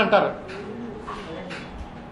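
A man's speech stops, then faint, low bird cooing comes in short stretches.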